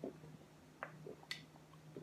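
Person gulping water from a plastic water bottle: a few soft swallowing sounds and small clicks, with one sharp click about two-thirds of the way through, over a faint steady hum.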